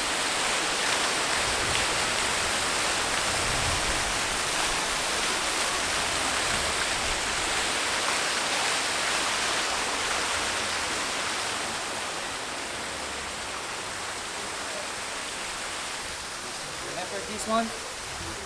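Water from the Fontana dell'Amenano, a marble fountain, spilling over the rim of its basin in a sheet and splashing steadily; it eases a little in the second half. Voices come in briefly near the end.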